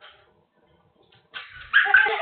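A young child squealing with laughter, high-pitched, starting suddenly about a second and a half in.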